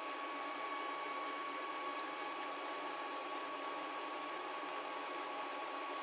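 Steady room tone: an even hiss with a faint, constant high-pitched hum and no other events.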